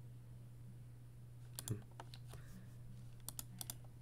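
Faint computer keyboard keystrokes: a couple of clicks under two seconds in, then a quick run of four near the end, over a steady low hum.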